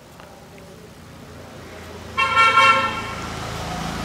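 A vehicle horn sounds once, a steady held honk of under a second about halfway through, over a low rumble of road traffic that grows louder.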